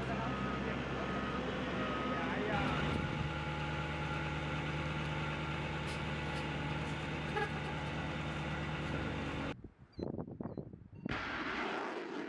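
Joint Light Tactical Vehicle engine idling steadily, with a repeated electronic beep over it for the first couple of seconds. Near the end the idle breaks off, and after a short lull a steady rushing noise comes in.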